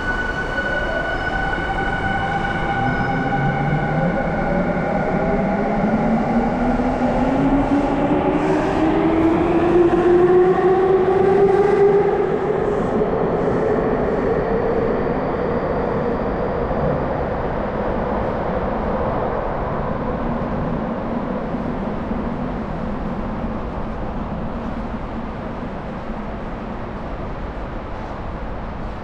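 Electric subway train pulling out of the station: the whine of its motors rises steadily in pitch as it gathers speed, loudest about ten to twelve seconds in, then its rumble fades away down the tunnel.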